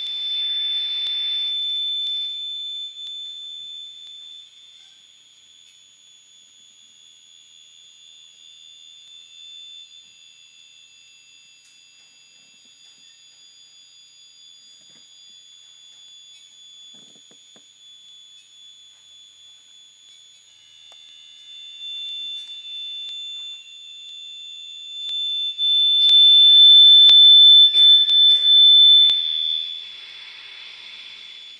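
A steady, piercing high electronic tone, like an alarm beep held on, from a piezo sound performance. It is loud for the first couple of seconds, sinks to a quieter whine, then swells loud again in the last five seconds with a few neighbouring tones and hiss joining it.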